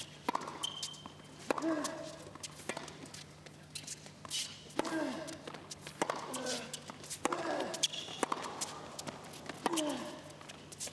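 Tennis ball knocking off rackets and bouncing on a hard court, a sharp knock every second or so, with voices calling out in the arena crowd.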